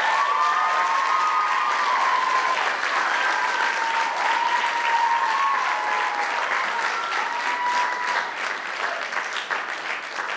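Audience applauding loudly right after the final number ends, with long, wavering high-pitched calls from the crowd over the clapping.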